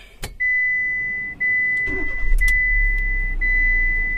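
A click, then a car's warning buzzer sounding a steady high tone, broken briefly about once a second, as the ignition is switched back on. A low rumble joins about two seconds in.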